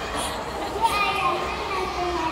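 Young children's voices speaking and calling out, with a brief knock a little before the middle.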